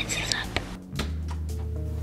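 A girl whispering softly over a quiet background music bed, whose low notes come in about halfway through.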